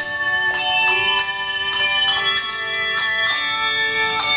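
Handbell choir playing a melody: handbells struck one after another, about two notes a second, each ringing on with a long sustain so the notes overlap.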